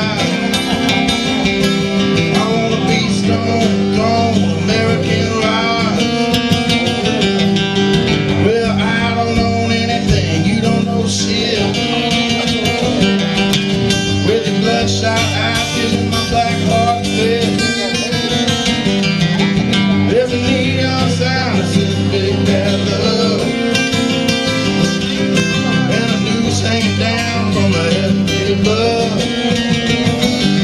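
A live band playing an alt-country rock song, led by guitars, at a steady loud level with no break.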